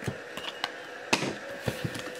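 Trading cards being handled and flipped: a few light, short clicks and snaps of card stock.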